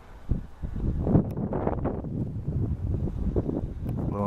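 Gusty Santa Ana wind buffeting the microphone: an uneven low rumble that rises about half a second in and keeps swelling and dipping.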